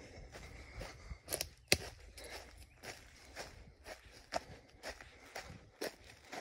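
Footsteps crunching over a dry pine-forest floor of needles and twigs, roughly two steps a second, with one sharp crack a little under two seconds in.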